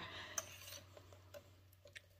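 Faint light clicks and taps of cardstock and a paper trimmer being handled while the sheet is lined up for a cut. One small click comes early and a few fainter ticks follow.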